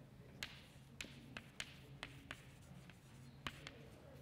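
Chalk writing on a chalkboard: a string of faint, irregular taps and short scrapes as each letter is struck onto the board.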